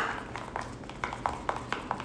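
A spoon stirring melted white chocolate in a plastic bowl, tapping and clicking against the bowl's side about five times a second, as semisweet chocolate is mixed in to tint it.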